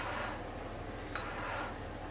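A metal spoon clicking against a plate and scraping up crumbly white cheese filling: one short scrape at the start and another about a second in.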